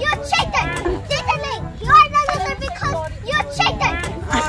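Children's voices chattering and calling out at play.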